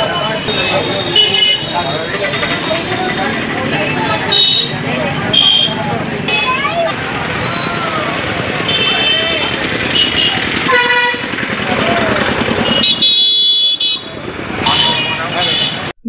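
Busy market ambience: many people talking at once, with several short vehicle horn toots scattered through.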